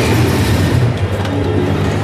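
Steady low rumble and general noise of a large, busy hall.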